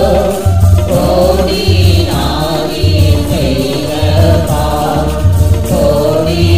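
A Christian worship song being sung with accompaniment, the voice's wavering melody over a low bass note that pulses about once a second.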